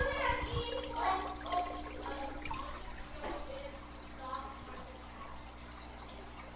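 Aquarium water churning and trickling at the tank's surface. A sharp knock comes right at the start, and an indistinct voice is heard over the water for the first two seconds or so.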